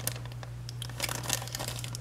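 Clear plastic bag crinkling in short, scattered crackles as it is handled, with the chrome-plated plastic model-kit wheel sprue inside.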